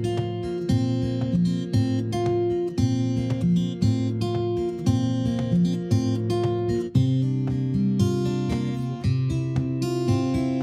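Background music: acoustic guitar strumming a steady rhythm.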